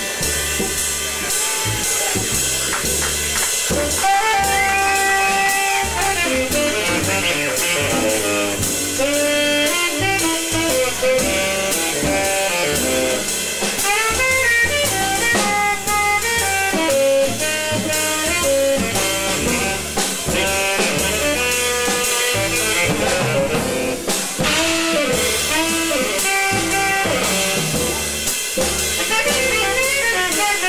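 Small jazz band playing: saxophone and trumpet melody lines over a drum kit and bass. The horns come in with a held note about four seconds in, after a drum-led opening.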